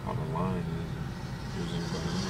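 Steady low hum of a car's engine and road noise, heard inside the cabin while driving.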